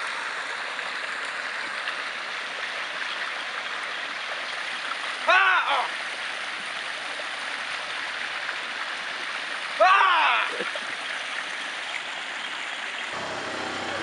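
Steady rush of water pouring over a small cascade in a creek, close by.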